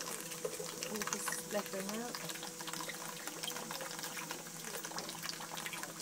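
Steady rush of running water with a faint steady hum: a pump set on high feeding cooling water through a hose into a copper alembic's condenser.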